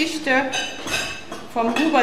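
Cups, plates and cutlery clinking, with a woman's reading voice briefly at the start and again near the end.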